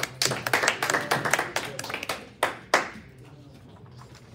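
A small group clapping for about three seconds, then dying away.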